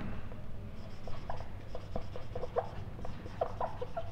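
Marker pen squeaking on a whiteboard in a quick run of short strokes as words are written out.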